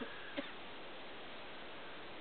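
Faint, steady hiss with no distinct source, with one brief short blip about half a second in.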